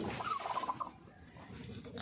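A chicken hen calls briefly, one wavering cry under a second long, typical of a broody hen disturbed on her nest.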